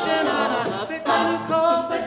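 Mixed male and female a cappella group singing in close harmony, several voice parts holding notes together, with a brief break about halfway through.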